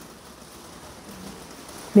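Faint steady hiss of room tone during a pause in a woman's talk; her voice comes back right at the end.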